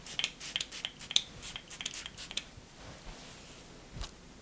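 Fingers rubbing and combing through hair, a quick irregular run of dry crackles and rustles that dies away after about two and a half seconds.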